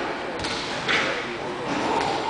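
Voices in a large hall, with a single sharp thump a little under half a second in.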